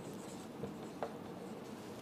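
Faint scratching of a marker writing on a whiteboard, with one small tick about a second in.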